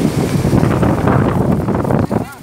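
Wind buffeting the phone's microphone in a loud, steady rush, over the sound of waves from a rough, choppy sea.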